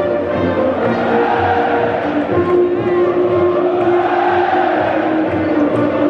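Music played over a football stadium's public-address system, with held notes, over the steady noise of a large crowd.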